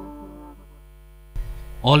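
The last notes of a keyboard jingle fade out, leaving a steady electrical hum. There is a soft click about a second and a half in, and then a newsreader starts speaking just before the end.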